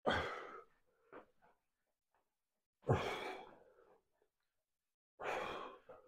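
A man breathing out hard three times, about two and a half seconds apart, each exhalation short and forceful with the effort of pulling a resistance band in a seated row.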